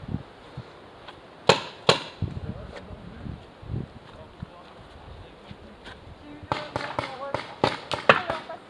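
Paintball fire: two sharp cracks about a second and a half in, scattered lighter clicks after them, and a quick run of cracks near the end.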